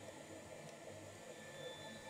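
Faint steady background hiss: room tone, with no distinct sound standing out.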